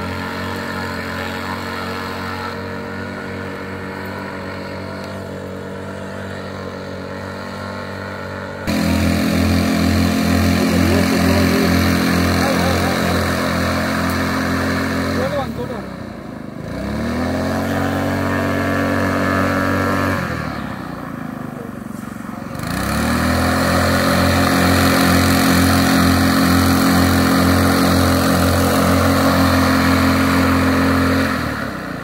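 Honda GX200 single-cylinder four-stroke engine driving a small airboat's reversible-thrust propeller. It runs at low throttle at first, then is opened up sharply with a pulsing beat. Twice it is eased back and picked up again, then it holds steady at high speed.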